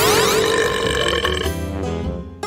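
One long cartoon burp from a character who has just gulped down a can of cola, fading out about a second and a half in, over background music.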